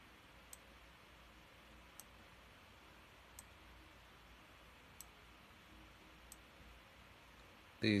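Five faint computer-mouse clicks, about one every second and a half, over a low steady hiss.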